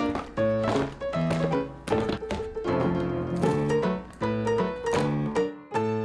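Background music: a steady rhythm of short, keyboard-like pitched notes and chords.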